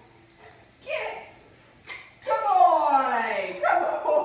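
A dog vocalising: one long, loud whining call that falls steadily in pitch, starting about halfway in, with another call beginning near the end. There is a shorter call about a second in and a sharp click just before the long one.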